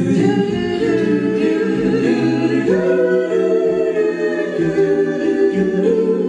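Eight-voice a cappella group, two sopranos, two altos, two tenors and two basses, singing sustained close-harmony chords without instruments. The lowest notes drop away about halfway through while the upper voices carry on.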